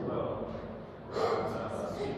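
Indistinct speech at the level of the surrounding talk, with a brief pause about a second in.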